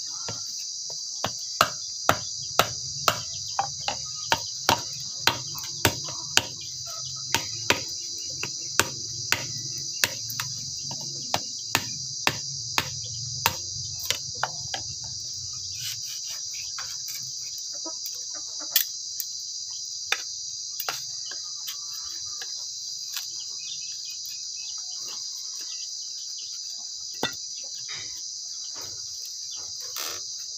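A long knife cutting and notching a bamboo stick against a wooden chopping block: sharp knocks close to two a second for about the first half, then only a few scattered strokes. A steady high drone of insects runs underneath.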